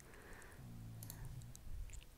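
Faint computer mouse clicks over quiet room tone, with a soft low hum in the middle.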